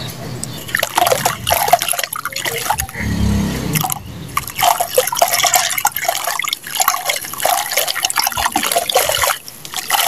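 Hand-crumbled lumps of wet sand breaking apart and falling into a tub of muddy water. Dense, irregular small crackles mix with splashing and dripping, and a duller low sound comes about three seconds in.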